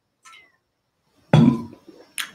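A man drinking water from a bottle: a faint brief sound of the swallow, then, a little past a second in, a short loud voiced "ahh" of breath as he finishes the drink.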